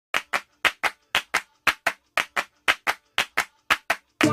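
Rhythmic handclaps in quick pairs, about two pairs a second, with clean silence between them.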